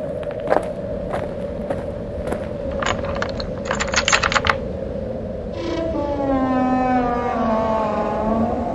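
Spooky intro sound effects over a steady drone: scattered clicks and a brief rattle, then a long drawn-out tone that glides slowly down in pitch.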